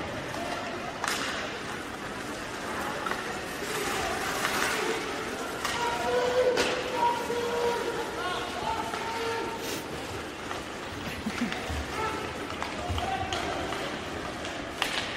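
Ice hockey rink ambience: a crowd of spectators talking and calling out, loudest around the middle, with several sharp knocks of sticks and puck on the ice and boards.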